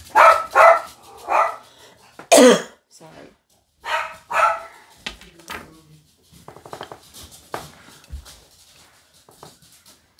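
A woman's coughing fit: about five or six harsh coughs over the first four and a half seconds, the loudest about two seconds in, followed by faint clicks and rustling.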